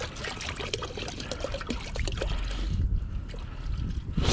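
Liquid pouring in a steady stream from a plastic jug into fluid already in a plastic bucket, splashing continuously.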